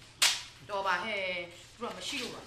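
A single sharp crack about a quarter of a second in, like a slap or a whip-crack sound effect, followed by a voice speaking.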